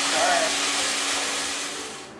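Steady rushing air noise with a faint low hum from running machinery, fading away near the end. A brief voice is heard just after the start.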